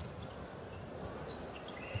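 Indoor volleyball arena background of steady crowd noise during a rally, with a single thud of a hand striking the volleyball just before the end.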